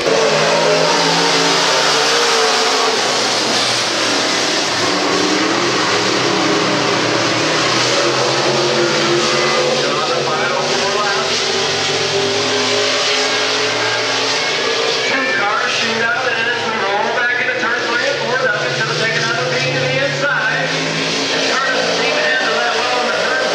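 Pro stock dirt-track race cars' engines running hard around the oval. The loud, continuous engine note rises and falls in pitch as the cars accelerate, lift and pass.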